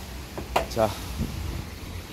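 Renault Samsung SM3 driver's door being unlatched and swung open quietly, with only a faint low thump. There is none of the clacking the torn door-check mounting plate used to make; the plate is now reinforced with a welded steel patch.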